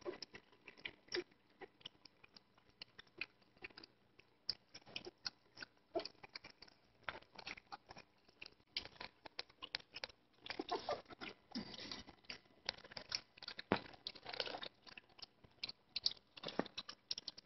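A litter of three-week-old puppies eating together from a shared dish, a faint, busy patter of small chewing and mouth clicks, thickest around eleven seconds in and again near fourteen.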